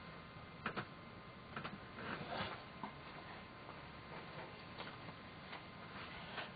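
Faint, irregular clicks and light taps, a few seconds apart, over a steady low hiss.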